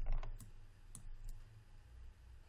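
Light clicks of computer mouse buttons: a quick run of clicks, then three more single clicks spread over the next second, over a faint steady low hum.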